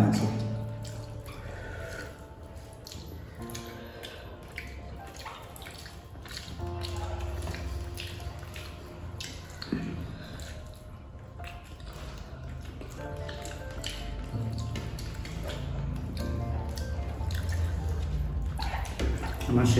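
Background music with a steady bass line under soft, wet clicking eating sounds: fingers mixing rice and curry, and chewing.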